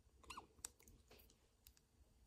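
Near silence, with a few faint, short clicks in the first second and a stray tick later.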